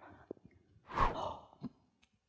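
A single breathy exhale, like a sigh, about a second in, with a faint click or two around it.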